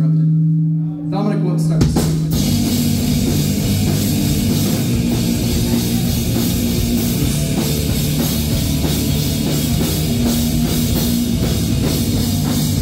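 Live rock band with drum kit and electric guitars: a held guitar note rings out, then about two seconds in the full band comes in and plays a loud driving rock song.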